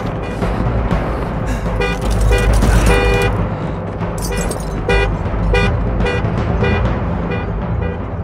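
Car horn honking in short pulses, about two a second, with a brief break near the middle, over a deep steady rumble and film score.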